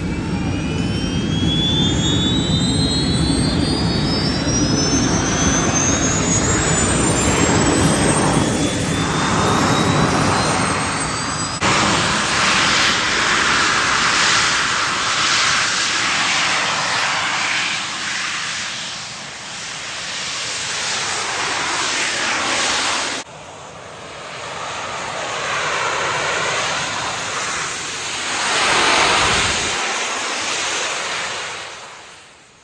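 The jet suit's small jet turbines, worn on the pilot's arms and back, run loudly with a rushing noise. Over the first dozen seconds several high whines rise in pitch as the turbines throttle up. The sound changes abruptly about twelve and again about twenty-three seconds in.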